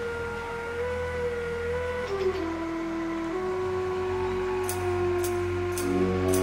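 Live band playing an instrumental passage: a slow lead melody of long held notes over a steady low bass. A few light, high cymbal ticks come in near the end.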